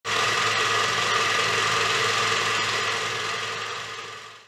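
A steady mechanical drone with a whine in it, fading out near the end.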